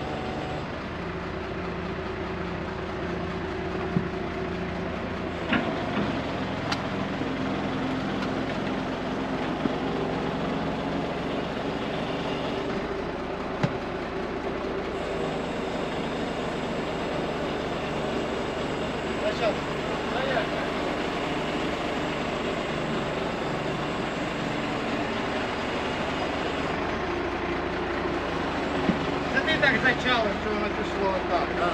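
Truck engine running steadily to drive a truck-mounted hydraulic loader crane that is lifting concrete slabs, with a few short sharp knocks along the way.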